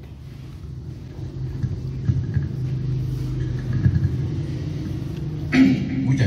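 A steady low rumble, with a brief voice near the end.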